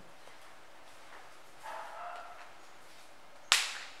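Faint squeak of a marker writing on a whiteboard, then a single loud, sharp snap about three and a half seconds in.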